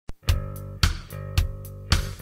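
Heavy metal band playing: a sustained guitar chord struck together with a drum hit about twice a second, with a cymbal stroke between the hits.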